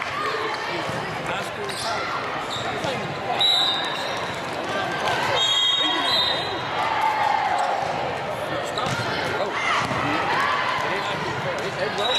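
Large indoor volleyball hall: players and spectators talking over one another, volleyballs being struck and bouncing now and then, and a few short high squeaks of shoes on the court, all with the echo of the big room.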